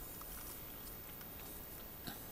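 Quiet room tone: a faint steady hiss with a few soft ticks.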